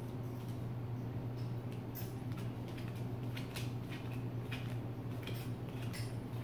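Faint soft clicks and flicks of a deck of playing cards being shuffled and handled in the hands, a few scattered taps, over a steady low hum.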